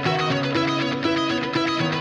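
Classic rock recording in an instrumental passage: electric guitar over a sustained low bass line, with no singing.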